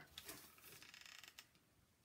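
Near silence, with faint clicks and rustling in the first half as a hot glue gun is picked up and brought over.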